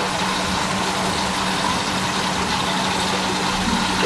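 Aquarium air pumps and filters running in a fish room: a steady hum with a constant low tone over an even hiss of moving air and water.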